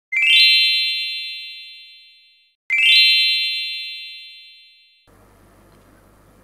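Electronic intro chime played twice, each a quick rising run of bell-like tones that rings out over about two seconds. About five seconds in it gives way to faint room tone with a low hum.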